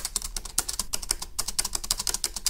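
Rapid typing on a computer keyboard, a dense, uneven patter of key clicks, many a second.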